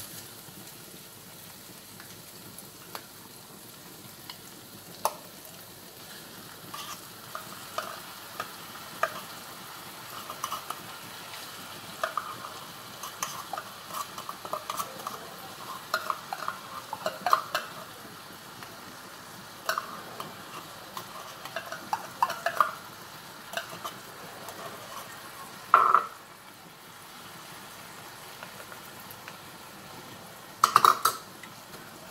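Meatballs sizzling steadily in a frying pan, with scattered irregular clicks and scrapes from seasoning and stirring, and one sharper knock near the end.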